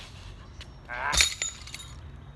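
A 42 lb weight-for-distance weight landing after a throw: one sharp, loud clanking impact about a second in, with a short rising sound just before it and a few clinks just after.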